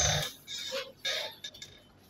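A man's voice over a microphone trails off into a pause, broken by two faint short sounds about half a second and a second in, then silence before the speech resumes.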